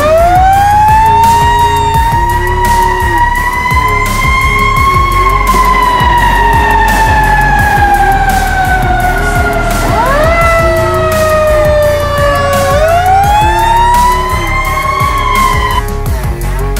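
Fire engine siren wailing. It climbs quickly at first, then falls slowly and steadily for about ten seconds, and winds back up twice near the end.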